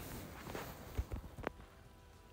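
Faint handling noise of small makeup items being picked up and put down: a few soft knocks and a sharper light click about a second and a half in, then quieter.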